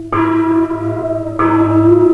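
Silent-film score music: a low sustained tone under two ringing bell-like chimes, the second about a second and a half after the first.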